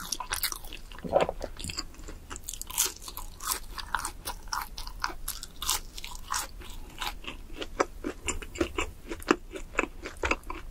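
Someone chewing and biting crunchy fried food, with many short crisp crunches in quick succession.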